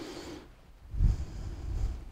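Wind buffeting the microphone, a low rumble that swells about halfway through, with faint breathing.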